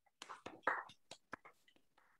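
Scattered, irregular hand clapping from a few people, faint and heard over a video call.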